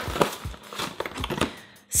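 Cardboard chocolate box being opened and the wrapped pieces inside rustling: a run of crinkles and small clicks that dies away near the end.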